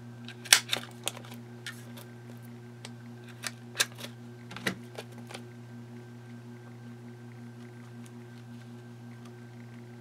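Handheld mini binder hole punch clacking as it punches holes in a clear plastic pocket. A few sharp clicks come in the first second or so, the loudest about half a second in, then a few more clicks and knocks around four to five seconds in, over a steady low hum.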